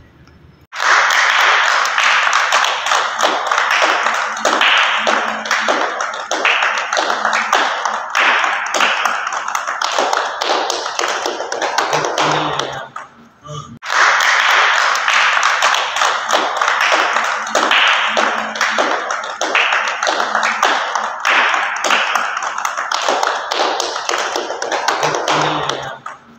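A group of people clapping by hand, a long round of applause that dips briefly about halfway through and then picks up again.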